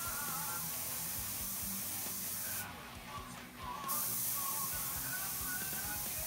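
Gravity-feed airbrush hissing steadily as it sprays dark brown paint. The air cuts off for about a second just before the middle, then starts again. Faint background music plays underneath.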